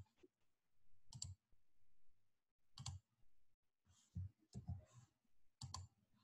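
Faint clicks of a computer mouse, about half a dozen spaced irregularly, over near-silent room tone.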